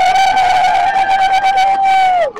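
A long, loud, high-pitched tone held at one steady pitch over a public-address loudspeaker, dipping and cutting off just after the end.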